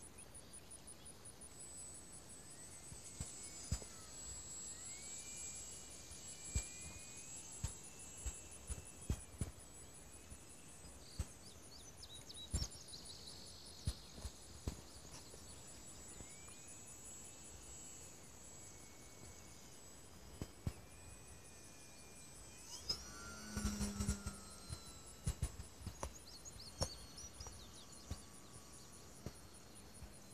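Faint outdoor ambience: a steady high-pitched insect trill with repeated whistled bird calls, broken by scattered sharp clicks and a brief cluster of knocks with a low hum near the end.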